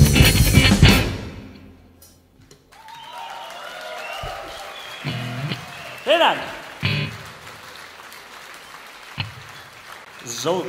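A rock band plays out the end of a song, the loud guitars and drums stopping about a second in. After a brief lull, a live audience applauds and cheers, with a loud whoop about six seconds in and a few sharp knocks.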